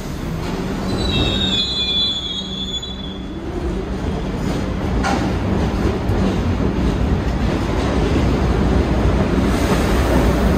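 New York City Subway train pulling out of the station: the wheels squeal shrilly against the rail for about two seconds, starting about a second in. Then a rumble and rattle of wheels on rail builds as the cars pick up speed, with a sharp clank about halfway through.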